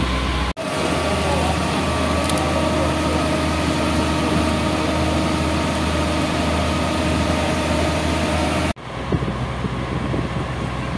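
Fire engine's motor running steadily, a constant low hum with a steady whine above it, broken by two abrupt cuts, one under a second in and one near the end.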